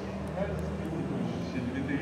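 Pre-recorded skit soundtrack played over a hall's loudspeakers: a steady low rumble with faint voice sounds.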